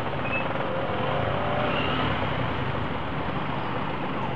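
Steady traffic noise of motorcycles and scooters idling and creeping in a packed traffic jam, a continuous mix of small engines close around the rider.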